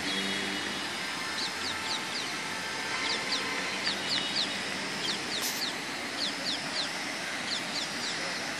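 Small birds chirping: short, quick, high calls that slide downward, coming in groups of two or three again and again over a steady outdoor background hum.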